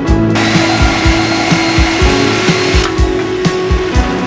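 Background music with a steady beat. A third of a second in, a power tool cutting the steel brackets off a truck frame starts, runs steadily for about two and a half seconds, then stops.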